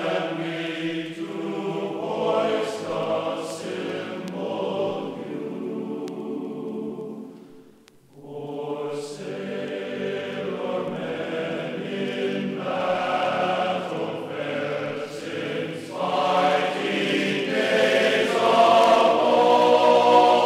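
Choir singing held chords in a classical choral piece. The voices fade almost to silence about eight seconds in, come back in, and swell louder near the end.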